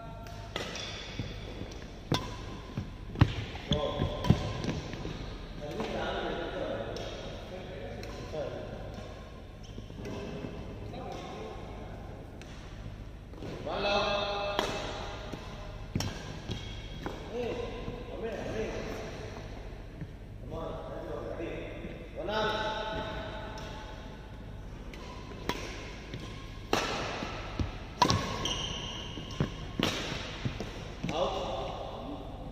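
Badminton rally: irregular sharp clicks of rackets striking the shuttlecock, mixed with thuds of players' footsteps on the court floor.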